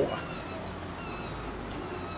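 Steady low outdoor background noise with faint calls of distant seagulls, mostly early on.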